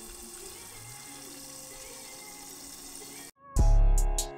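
Breaded fish fillets frying in hot oil in a pan, a steady sizzle. It cuts off just before the end, and loud music with a heavy beat comes in.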